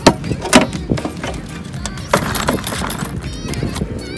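A clear plastic tackle box being opened by hand: sharp plastic clicks as the latches snap loose, then knocks and rattling as the lid is lifted, with background music underneath.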